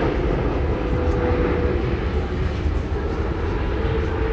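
Steady low rumble and hiss of outdoor ambience on the microphone. A faint steady hum comes in briefly about a second in and again near the end.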